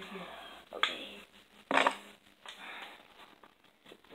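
Board-game frame pieces knocking and clicking as they are pushed together at the corners, with two sharp snaps: one a little under a second in, and a louder one just under two seconds in.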